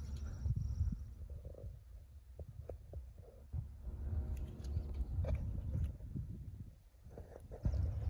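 Uneven low rumble on a handheld phone's microphone, from wind and handling as the phone is moved, with a few faint clicks.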